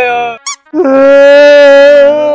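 A person wailing loudly in long, held cries at a steady high pitch: one cry breaks off about half a second in and a second begins just before a second in. A brief high chirp sounds in the gap.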